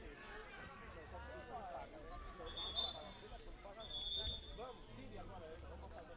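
Referee's whistle blown twice in short, steady blasts about a second apart, stopping play, over shouting voices of players on the pitch.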